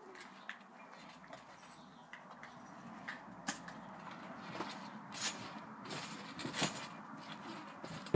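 Bare feet stepping on a trampoline mat: a handful of faint, short knocks and creaks, the clearest in the second half.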